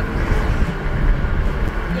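Steady road and engine rumble inside a moving car at highway speed.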